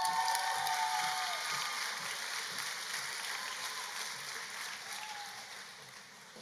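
Audience applauding for a graduate, with a long drawn-out cheer from one voice in the first second or so. The clapping fades away over the following few seconds.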